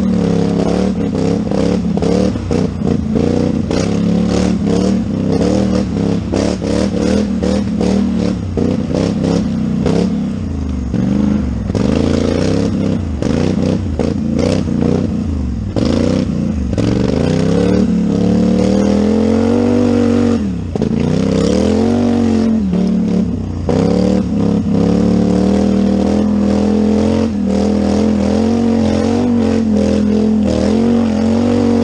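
Polaris Scrambler sport ATV's parallel-twin engine under hard throttle, revs rising and falling continually with throttle and gear changes, while the machine clatters and knocks over bumps and roots. Twice, about two-thirds of the way through, the revs drop sharply and then climb again.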